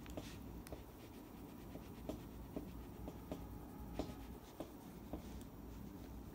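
A soft cloth rubbing over the head of a small guitar screw held between the fingertips, polishing it: faint scratchy rubbing with a string of light clicks.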